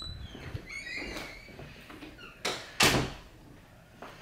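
Two sharp knocks in quick succession, about a third of a second apart, after faint high squeaks about a second in.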